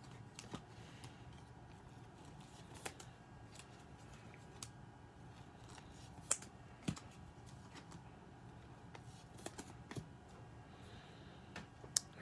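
Faint, irregular clicks and snaps of 2020-21 NBA Hoops trading cards being handled and flipped through one at a time.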